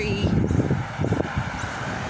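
Steady low rumble of wind buffeting a handheld phone's microphone outdoors, with a faint background of traffic.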